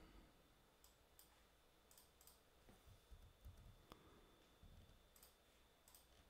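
Near silence with a few faint, irregular computer mouse clicks.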